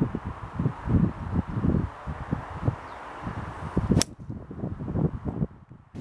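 Golf driver striking a teed ball, one sharp crack about four seconds in, over low rumbling wind gusts on the microphone.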